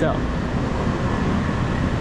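Small box delivery truck's engine running with a steady low rumble as it drives slowly past close by, with street traffic noise.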